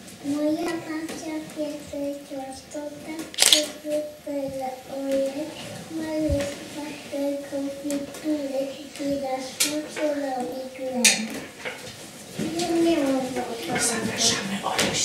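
A group of young children singing a song together without instruments, in held, stepping notes. A few sharp knocks or clicks come through the singing, the loudest about three and a half seconds in.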